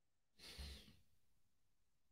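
A person's single short, faint sighing exhale about half a second in; otherwise near silence.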